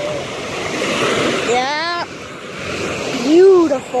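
Small surf breaking and washing up the sand, with wind on the microphone. A person's voice cuts in twice, briefly; the second time is the loudest moment.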